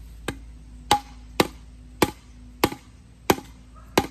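Bamboo post being pounded into the ground by striking its top with a short length of bamboo. Seven sharp knocks come evenly, about one every two-thirds of a second, some with a brief ring.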